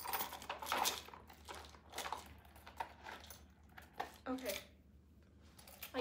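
Keys and a metal chain strap clinking and jingling as a small leather chain bag is handled and packed. There are several sharp clinks in the first half, then quieter handling.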